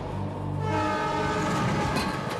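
Train horn blowing, a chord of steady tones starting under a second in, over a low steady rumble.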